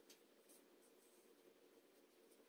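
Near silence, with faint soft scratching as a thin cotton thread tail is drawn through a crocheted cord with a tapestry needle.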